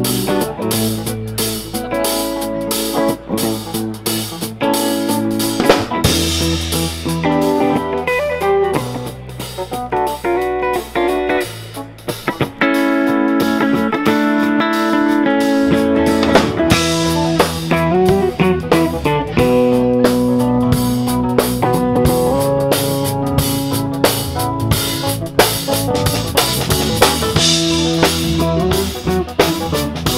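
A live rock band playing: electric guitar, bass guitar, keyboard and drum kit. The music dips briefly about twelve seconds in, then comes back fuller.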